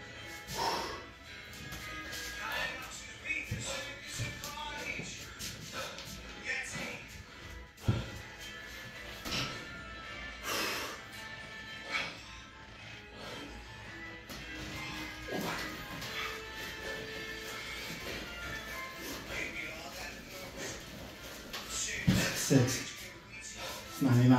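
Background music with talk over it, from a video playing in the room, and a couple of louder short sounds near the end.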